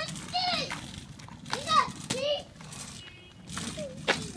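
Young children's voices: several short, high-pitched wordless calls and babble, with no clear words.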